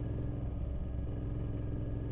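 Royal Enfield Interceptor 650's parallel-twin engine running steadily at an even cruising speed, a constant low hum.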